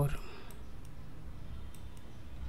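A few faint, sharp clicks of a computer mouse button, spaced irregularly, over a low steady hum.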